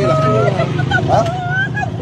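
People talking, with a motor vehicle engine running steadily underneath.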